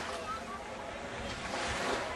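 Surf washing onto a sandy beach, with wind rushing across the microphone.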